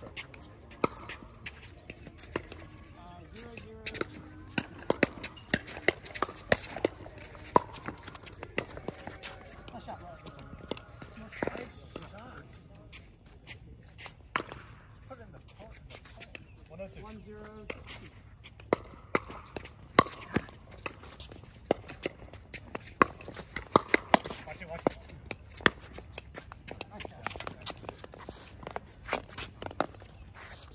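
Pickleball paddles hitting a plastic ball back and forth in a doubles rally: a string of sharp, irregular pocks.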